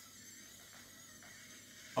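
SwitchBot Curtain robot's motor running faintly and steadily, a quiet whir as it drives the curtain along the rod.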